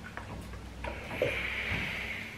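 Steam iron hissing steadily for about a second, starting a little before halfway. Before it come faint knocks and rubbing of the iron handled over fabric.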